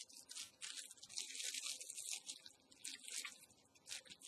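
Handling sounds of a small plastic bag being rummaged through: a series of faint, irregular crinkles and rustles.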